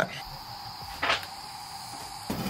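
A single short scrape about a second in, made while lighting a cast-iron wood stove by hand, over a steady faint background.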